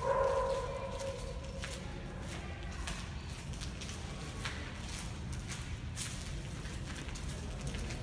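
Footsteps: scattered, irregular clicks and scuffs over a steady low rumble. Right at the start there is a short sustained tone that fades away over about a second and a half.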